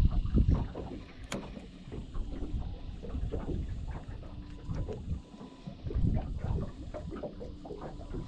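Wind buffeting the microphone and water lapping against a small boat's hull, an uneven low rumble with one sharp click a little over a second in.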